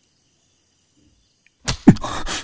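Near silence, then near the end a sudden loud whoosh with a deep sweeping swell: a film whoosh-and-hit sound effect.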